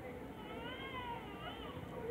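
A newborn baby crying: one wavering cry, just over a second long, starting about half a second in.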